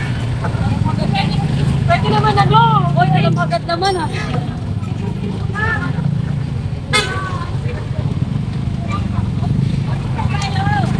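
Busy street-market bustle: a steady low rumble of vehicle engines and traffic under people talking and calling out, the voices loudest between about two and four seconds in. A sharp knock sounds about seven seconds in.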